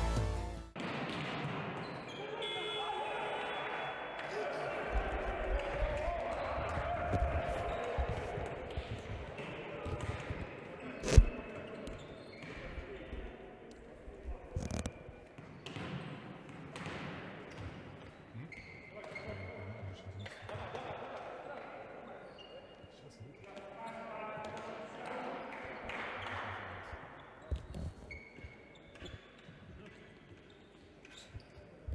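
Volleyballs being hit and bouncing on a sports hall floor, mixed with people's voices in the hall. One sharp ball strike about eleven seconds in is the loudest sound.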